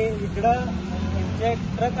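Short phrases of a voice talking over a low, steady vehicle engine rumble.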